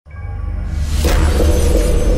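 Show intro music with heavy, steady bass and a loud crashing hit about a second in that rings on under the music.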